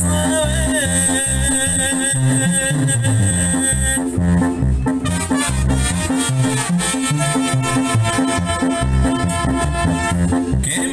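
Small brass band of trumpet and saxophones playing an instrumental passage over drums and bass coming through loudspeakers, with a steady repeating bass beat.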